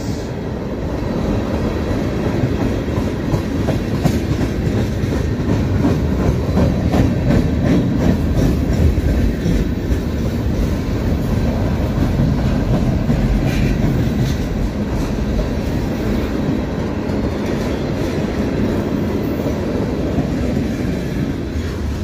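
Freight cars of a long train rolling past at close range, from tank cars to boxcars to covered hoppers. Steel wheels rumble steadily on the rails, with scattered clicks and clacks from the wheels over the rail joints.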